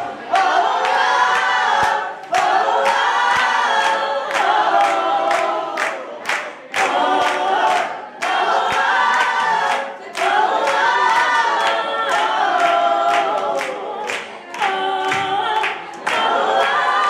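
Live female vocals, loud, singing a pop-song medley in phrases of a few seconds with an electric keyboard accompanying, and sharp regular percussive hits through it.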